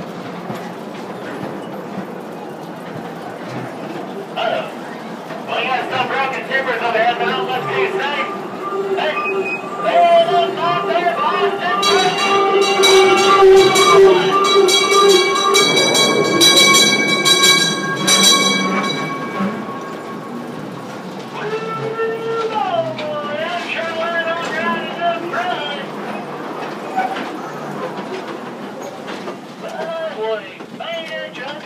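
Theme-park mine train running through a dark mine tunnel with the ride's show audio playing: wavering, voice-like sounds, and about twelve seconds in a loud, long whistle-like tone that lasts some seven seconds before fading.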